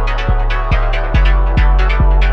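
Electronic rave music: a drum-machine kick with a falling pitch hits about two and a half times a second over a sustained bass tone, with crisp high percussion on top.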